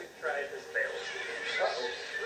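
Speech: a man talking in a TV programme, heard through the television's speakers in the room.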